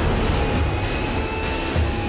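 Rocket from a WM-80 multiple rocket launcher climbing away after launch: a loud, continuous rushing roar, heaviest in the low end.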